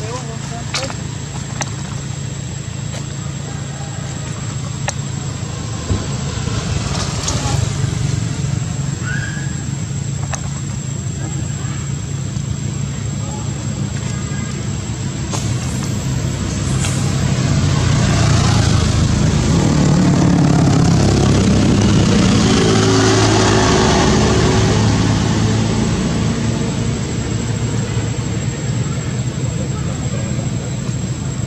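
A motor vehicle's engine runs throughout, growing louder from a little past halfway and fading again near the end, as if passing by. Indistinct voices can be heard behind it.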